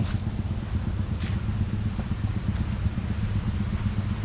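A steady low motor hum, like an engine running without change, with a few faint ticks.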